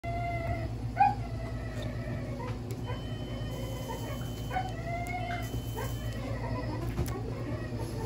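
A sedated dog whining and whimpering in short high-pitched calls, the loudest about a second in. A faint steady high tone sounds twice in the middle, over a low steady hum.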